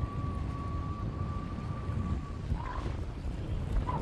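Wind buffeting the microphone, a low rumbling noise throughout, with a thin steady tone running underneath that stops a little past halfway.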